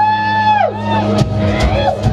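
Live rock band opening a song with an instrumental intro: a sustained note slides up, holds and sags back down, twice, over a steady low drone.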